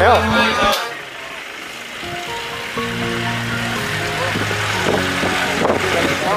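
Background music: a song with held instrumental tones and a singing voice. It dips about a second in, then resumes.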